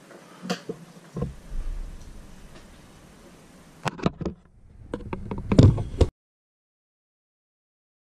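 Scattered knocks and clunks from handling a dryer's sheet-metal top panel as it is slid back into place and seated. A busier run of loud clatter follows about four to six seconds in, then the sound cuts off abruptly.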